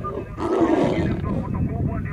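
A lion growling once, a loud, rough burst lasting under a second, starting about half a second in.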